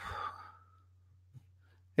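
A man sighing: one short breath out through the mouth about half a second long, then quiet.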